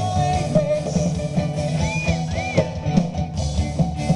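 Live rock band playing through a PA: electric guitars, bass and drum kit, with some singing, heard from the crowd. Two short bent high notes ring out about two seconds in.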